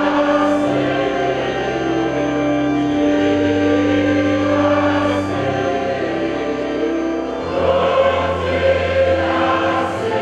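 A choir and congregation slowly singing a prayerful hymn in held, sustained notes over a steady instrumental bass.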